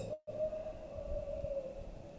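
A faint steady hum at a single pitch, after a brief gap in the sound at the very start.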